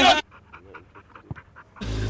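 Group laughter and shouting cut off just after the start, giving way to quiet, breathy, panting laughter in quick pulses, about six a second; loud laughter comes back near the end.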